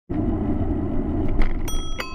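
Bicycle bell rung twice near the end, bright ringing strikes that hang on, over the steady low rumble of wind and road noise from riding.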